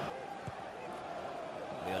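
Football stadium crowd noise, a steady even level under the broadcast. The commentator's voice comes back near the end.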